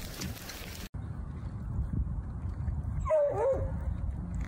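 Noisy rush of a hailstorm for about the first second, then it stops. A low rumble follows, with one short, wavering whine from a dog a little after three seconds.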